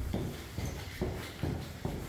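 A few soft, low thumps, about four in two seconds, over a faint low rumble.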